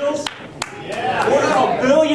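Slow, spaced hand claps, about three a second, for the first half-second or so, then untranscribed voices from about a second in.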